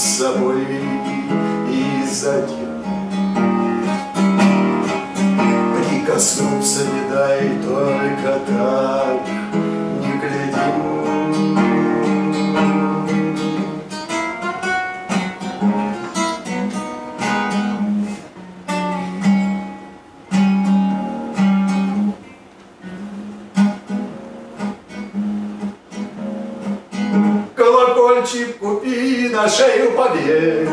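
Acoustic guitar played as accompaniment to a man singing a song, strummed and picked. The playing grows sparser and quieter in the second half.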